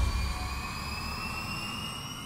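A dramatic sound effect from the show's background score: a sustained drone of several high tones gliding slowly upward in pitch over a low rumble, fading as it goes.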